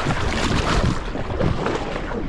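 Paddle strokes and water splashing and rushing along the hull of a two-person outrigger canoe under way, with wind noise on the microphone.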